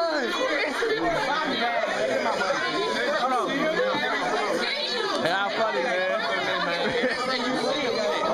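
Several people talking and exclaiming over one another at once, a steady excited chatter of overlapping voices.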